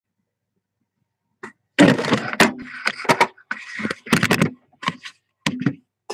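Handling noise from a webcam being set up: a run of sharp clicks and knocks with short rustles between them, starting about a second and a half in after silence.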